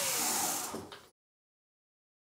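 Nireeka Mega fat-tyre e-bike's rear wheel spinning freely off the ground and winding down after a short test of its mid-drive motor, a steady hiss with a faint falling whine. It fades and cuts off abruptly about a second in, leaving silence.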